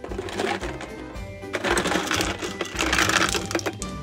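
Small plastic balls and toy cars rattling and clattering out of a clear plastic jar as it is tipped and emptied onto a carpet: a short spell at first, then a longer, louder one from about a second and a half in. Background music plays underneath.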